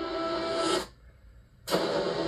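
Movie-trailer soundtrack: sustained ominous music with a swelling whoosh that cuts off suddenly into a brief silence, then comes back with a sharp hit.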